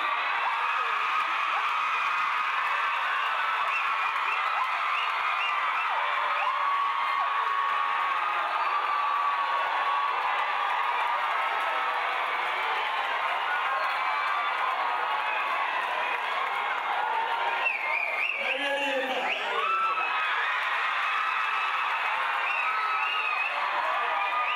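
A theatre audience cheering and whooping, many voices shouting and screaming over one another at a steady level, with one voice standing out briefly about three-quarters of the way through.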